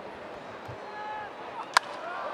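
A single sharp crack of a wooden baseball bat hitting the pitch near the end, the contact for a home run drive to deep right field, over a low ballpark crowd murmur.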